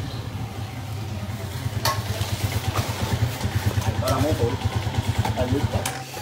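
Small motorcycle engine idling with a fast, even low putter, a little louder from about a second and a half in.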